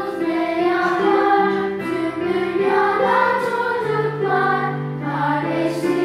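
Children's song in Turkish sung by a group of voices over steady instrumental accompaniment.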